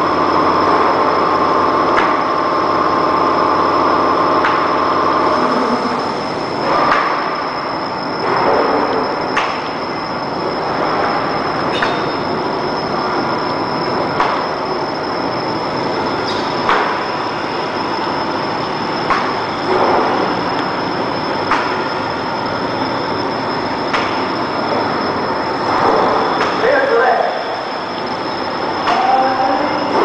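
Semi-automatic roll film laminator with sheet separator running: a steady machine hum with a constant high whine, and a sharp click repeating about every two and a half seconds. A lower hum drops out about five seconds in.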